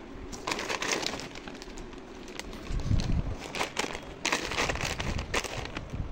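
Paper carrier bag and crinkly plastic packaging rustling in irregular bursts as a plastic-wrapped noodle multipack is handled, with a dull thump about three seconds in.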